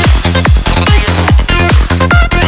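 Fast trance music from a DJ set: a steady four-on-the-floor kick drum at about 140 beats a minute, a rolling bass between the kicks, and high synth arpeggios above.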